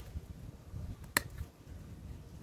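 A single sharp click about a second in, hand pruners snipping through an eggplant stem, over low rumbling handling noise on a phone microphone.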